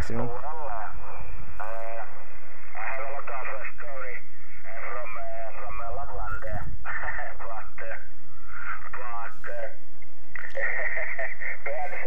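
A man's voice from a distant amateur station, received on the 17 m band and heard through a Yaesu FT-817ND transceiver's speaker. It sounds thin and narrow, like shortwave radio speech, over a steady hiss.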